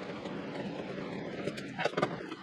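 A homemade shop air-filtration fan running with a steady noise. There are a few light clicks near the end.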